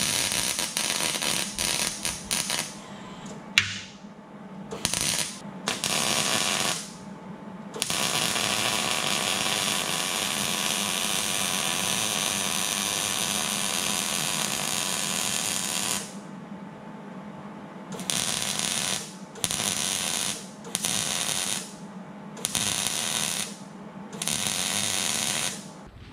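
MIG welder laying welds on a steel transmission mount: a crackling hiss in a string of short bursts, with one long unbroken run of about eight seconds in the middle, over a low steady hum.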